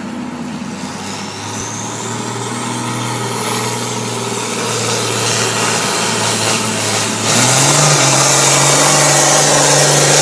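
John Deere 4430's turbocharged six-cylinder diesel working at full throttle under heavy load as it drags a pulling sled, with a high turbo whine climbing steadily in pitch. The engine grows steadily louder, and its pitch steps up about seven seconds in.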